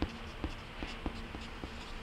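Pencil writing letters on paper: a soft scratching with small ticks as the strokes land, over a faint steady hum.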